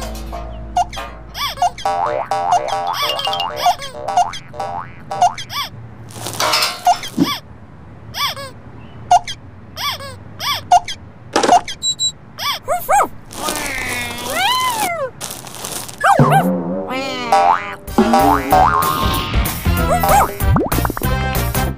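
Cartoon soundtrack: playful children's background music with springy boing sound effects and sliding whistle-like glides, the longest glides a little past the middle.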